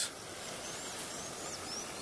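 Outdoor ambience: a steady background hiss with a few faint, high bird chirps, about four short rising-and-falling calls in the second half.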